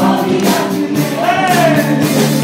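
Live church worship band with a drum kit, and a congregation singing along in unison. Near the end a lead voice slides up and back down over the held notes.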